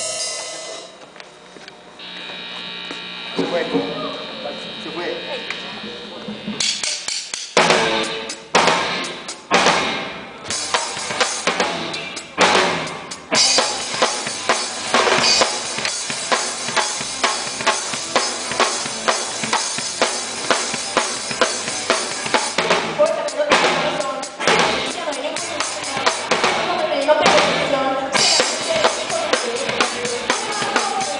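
Rock band playing live, with the close-by Gretsch Renown Maple drum kit loudest. A few seconds of held tones open it, then the drums come in with separate accented hits about seven seconds in and settle into a steady rock beat with cymbals from about a third of the way through.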